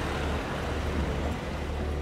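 Street traffic noise: a steady low rumble of passing vehicles.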